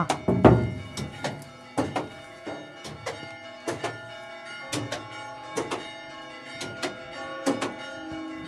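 A large church bell started swinging electrically, its clapper striking repeatedly at an uneven pace, some blows in quick pairs, each leaving a lingering ring. The loudest strike comes about half a second in.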